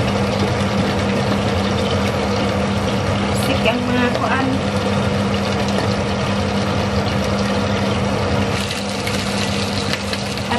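Chicken frying in a pan: a steady sizzle with a steady low hum under it.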